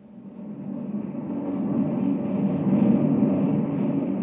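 Radio-drama sound effect of a rocket ship's engine in flight: a steady drone that fades in and grows louder.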